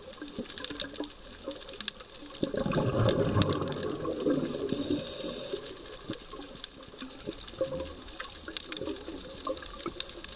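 Underwater sound of a scuba diver's regulator exhaling: one long rush of gurgling bubbles from about two to five and a half seconds in, over a steady scatter of sharp clicks.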